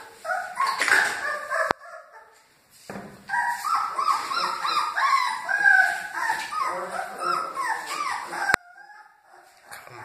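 Great Dane puppies whimpering and squealing, many short high cries overlapping, in a brief burst, then after a short lull a longer run that stops suddenly near the end.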